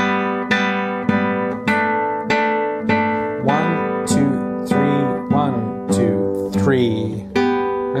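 Nylon-string classical guitar played fingerstyle, a steady run of single plucked notes about two a second. The right hand plays a phrase ponticello, near the bridge, and then shifts up to tasto for the next downbeat.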